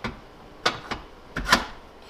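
Steel drill bits clinking as they are handled against a Huot drill index stand, four sharp clinks in two seconds, the last the loudest.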